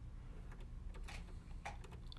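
A few faint, scattered small clicks and ticks from fingers handling thread at a serger's needle while threading it, over a low steady room hum.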